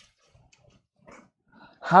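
A quiet pause holding a few faint, brief soft sounds, then a man's voice starts a word just before the end.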